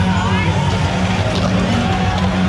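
Loud background music with a steady bass line, over crowd chatter.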